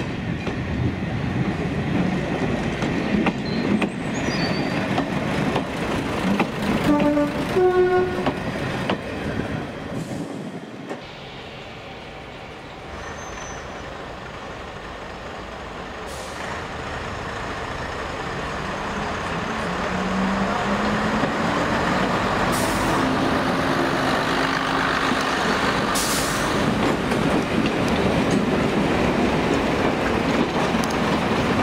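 A first-generation diesel multiple unit running in with its underfloor diesel engines and wheels rumbling on the track. About seven seconds in it gives two short horn blasts, a lower note then a higher one. In the last third a train passes close, its rumble of wheels on rail growing steadily louder.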